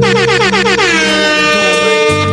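DJ air horn sound effect over the music: a rapid stutter of blasts sliding down in pitch through the first second, then settling into one held note.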